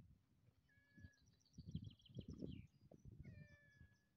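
Near silence outdoors, with faint high bird chirps and short whistles and a few soft crunching sounds about halfway through.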